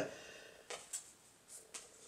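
Near quiet with about four faint, short clicks spread through the middle: small handling sounds of a thumbtack and construction paper on a thick phone book.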